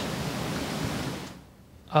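Steady hiss of room noise picked up by an open microphone, which drops away abruptly to near silence about a second and a half in.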